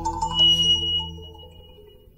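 Live jazz-fusion band (keyboards, guitar, bass, percussion, drums) holding a chord that dies away. A bright, high, bell-like tone rings in about half a second in and sustains as the music fades.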